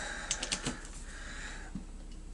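Ratcheting screwdriver clicking in a few short runs as the screws holding the cylinder of a Partner 350 chainsaw are tightened.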